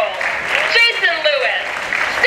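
Crowd applauding, with high voices calling out over the clapping.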